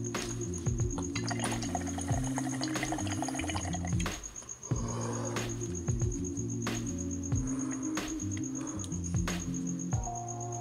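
Background music with a stepped bass line and a regular beat. It drops out briefly about halfway through.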